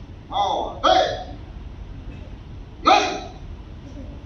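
Three short, sharp karate shouts: two in quick succession about half a second in, a third near the three-second mark.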